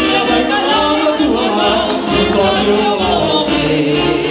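A Portuguese marcha popular song: many voices singing together in chorus over a band, with a steady beat.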